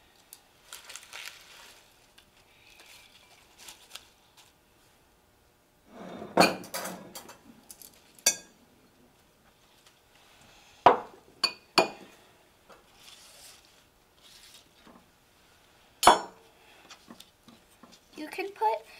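Metal salad tongs and glass and ceramic bowls clinking and knocking as mixed salad greens are dished out, a handful of sharp knocks standing out among soft rustling of the leaves.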